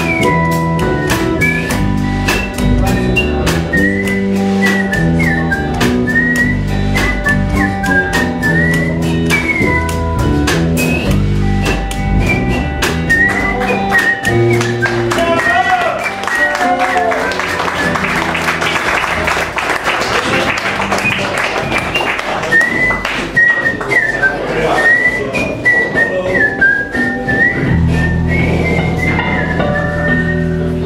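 A live blues band playing an instrumental passage on electric guitar, electric bass and drum kit, with a lead line of short, bending high notes. In the middle the low bass notes drop out for several seconds under a hiss of cymbals, then come back in near the end.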